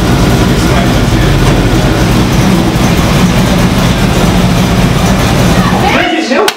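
A car engine idling with a steady, loud low rumble, with voices behind it.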